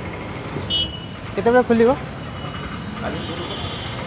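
Street traffic background, with a short high-pitched beep about a second in and a faint thin high tone in the second half.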